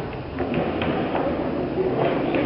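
A neodymium magnet ball rolling down a channel inside a steeply tilted plastic tube: a low, steady rumble with a few faint clicks.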